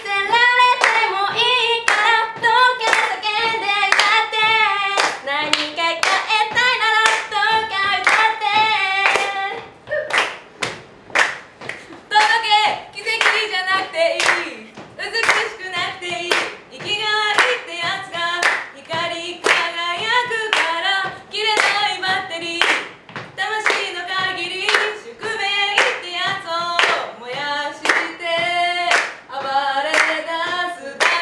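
A young woman singing Japanese pop lyrics a cappella over a steady clapped beat. Around ten seconds in the singing breaks off briefly, leaving only the claps, then resumes.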